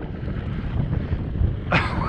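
Gusty wind buffeting the camera microphone: a low, uneven rumble.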